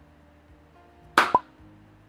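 A short, sharp snap sound effect for crocodile jaws closing, two quick hits about a second in, over faint background music.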